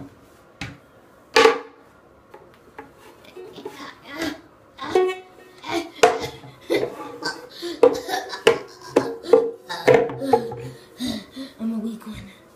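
Small toy ukulele's strings plucked and strummed unevenly: a run of short, quickly fading notes, preceded by a single sharp knock about a second and a half in.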